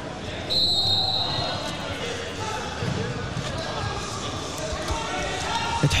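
Crowd noise echoing in a large hall: many voices calling and shouting from the seats and corners, with a few dull thuds mixed in.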